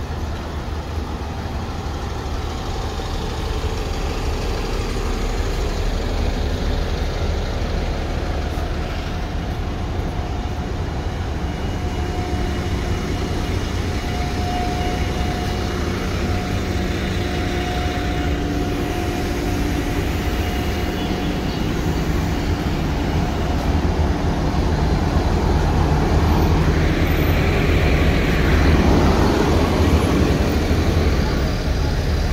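City buses' engines running at a bus stand: a steady low rumble with a faint hum, growing louder near the end as a bus is close by.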